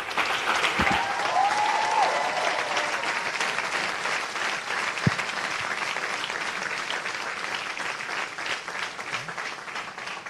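An audience applauding, a dense steady clapping that slowly fades toward the end.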